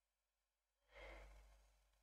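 Near silence, with one faint exhaled breath about a second in that fades away.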